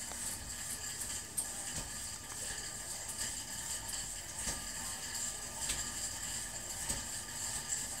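Indoor spin-style exercise bike's flywheel and drive spinning as a small child pedals: a steady whir with a few light clicks and knocks scattered through it.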